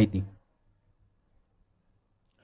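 A man's voice ends a short phrase at the very start, then near silence: room tone.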